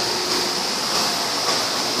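Steady, even hiss of background room noise, like a ventilation fan running, with no distinct event in it.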